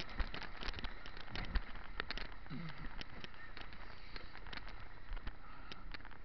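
Whitewater rushing and splashing around an inflatable kayak in a rapid, with many sharp clicks and splats of water and spray hitting the boat and the camera, thickest in the first three seconds and thinning out after.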